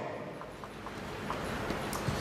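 Quiet room tone of a hall with a low steady hum and a few faint, irregular light ticks.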